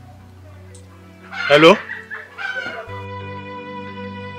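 Background film music of sustained tones, with a single loud 'Hello?' spoken about a second and a half in, falling in pitch, and a shorter vocal sound about a second later.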